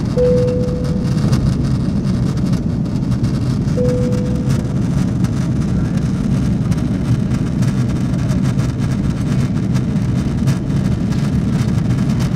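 Steady roar of an airliner cabin in flight: engine and airflow noise, even and unchanging. Two short fading chime tones sound, one right at the start and one about four seconds in.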